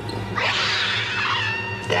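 A cat hissing and yowling, starting about half a second in and lasting about a second and a half, over a low steady music drone.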